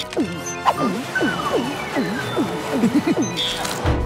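Cartoon drinking sound effect: a fast run of bouncing, gulping pitch swoops, about three a second, as water is sucked up through a straw. Under it a slow falling tone marks the water level dropping, over background music.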